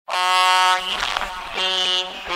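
Opening of an experimental industrial electronic track: a steady, sustained synthetic tone with a fixed pitch sounds at the start, breaks off to a low, rough rumbling texture, and returns about a second and a half in.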